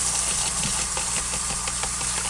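A spoon scraping and stirring through a wet, mushy microworm culture of bread and yeast in a plastic container, giving a few faint scrapes and clicks over a steady low hum.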